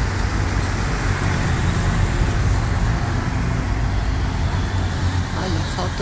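Steady low rumble of road traffic, with no single vehicle standing out.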